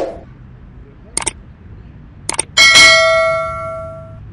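Subscribe-button sound effect: a short swish at the start and two brief mouse clicks, then a bright bell ding about two and a half seconds in that is the loudest sound and fades out.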